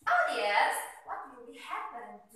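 A girl's loud, harsh, theatrical voice acting the part of a witch: one long cry of about a second starting suddenly, then a shorter one near the end.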